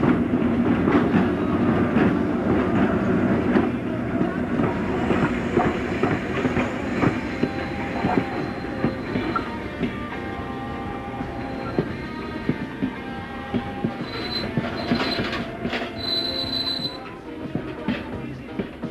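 A train rolling slowly over station tracks: steel wheels clicking over rail joints and points, with squealing from the wheel flanges and a high squeal near the end.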